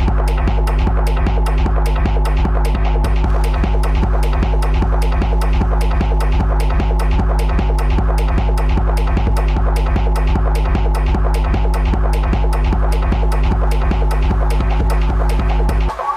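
Techno played in a DJ mix: a loud, steady throbbing bass under a fast, even beat of sharp ticks. The deep bass drops out abruptly at the very end.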